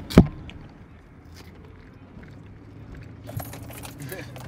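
A single sharp knock just after the start, then the low steady hum of a car cabin, with light metallic jingling and clicking near the end.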